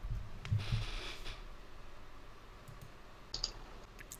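Faint clicks of a computer keyboard and mouse in a small room, with a short soft hiss about a second in.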